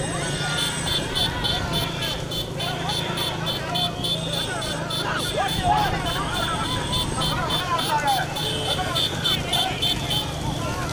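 Motorcycle engines running close behind horse-drawn racing carts, mixed with people shouting along the roadside.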